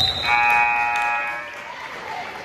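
A referee's whistle blows briefly and high, then the gym's scoreboard horn sounds one steady buzz of a little over a second during a stoppage in a basketball game.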